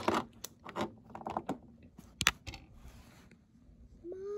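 Scattered light clicks, taps and scrapes of plastic toy figures and their stable set being handled, with one sharper click a little past the middle.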